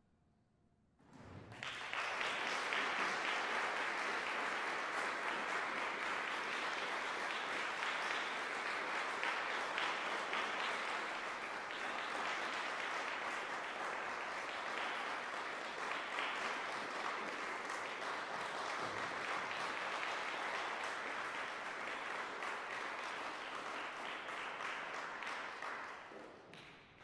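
Audience applause: after a second of near silence, many people start clapping together about a second in and keep up a steady, even applause that begins to die away at the end.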